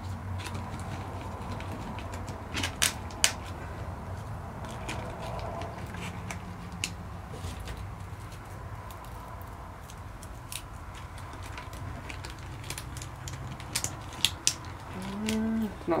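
Small survival-kit items being handled and packed into a plastic water bottle: scattered clicks and knocks, the sharpest around three seconds in and again near the end, over a low steady hum.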